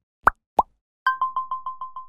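Two quick rising pop-like sound effects, then an electronic phone ringtone: a rapid trilling two-tone ring pulsing about seven times a second, starting about a second in.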